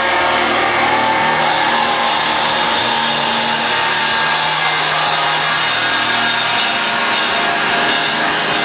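Post-hardcore band playing live at full volume: distorted electric guitars and bass holding long low notes over the band. The recording is overloaded, so it comes out as a dense, harsh wash of noise.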